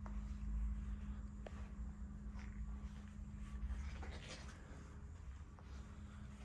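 Quiet room tone with a steady low hum, faint soft footsteps on carpet, and a few small clicks.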